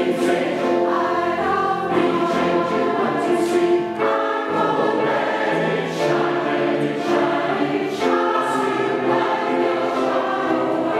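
Mixed SATB choir singing in four-part harmony: sustained sung chords, with the low voices dropping away briefly about four seconds in before coming back.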